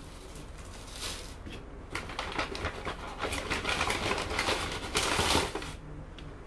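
Rustling and crinkling of paper and plastic takeout food packaging as the items are unwrapped and handled, in irregular bursts from about a second in until near the end.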